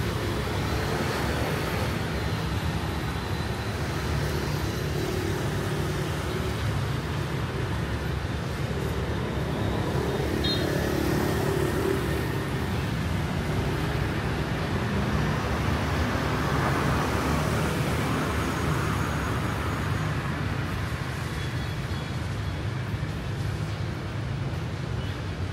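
City road traffic passing on wet pavement: a steady wash of engine rumble and tyre hiss, swelling a little as vehicles go by near the middle and about two-thirds of the way through.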